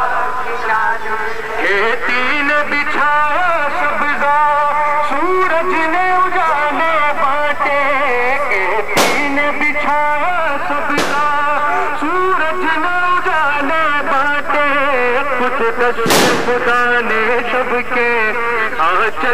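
Loud music with a wavering sung melody, cut by three sharp firecracker bangs: two a couple of seconds apart about halfway through, and a louder one with a short echo near the end.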